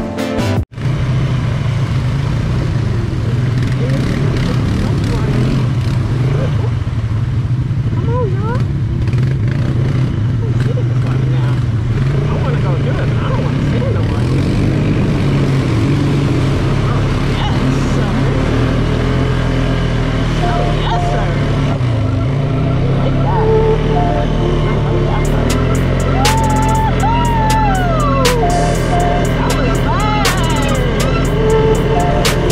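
An ATV's engine running steadily as the quad is ridden along a dirt trail. Sharp knocks and rattles come in near the end.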